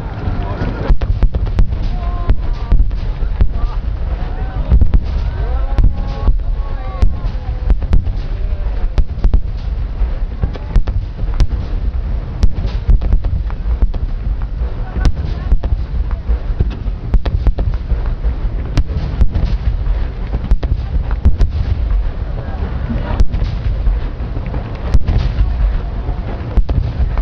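A starmine fireworks barrage: a rapid, irregular string of sharp bangs and booms, dozens of them, over a continuous low rumble.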